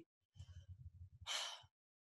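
A woman takes a short, audible breath about one and a half seconds in, sigh-like, as she pauses in her spoken story. Before it comes a faint, low, pulsing rumble.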